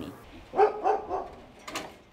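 A dog barking two or three times in quick succession, starting about half a second in.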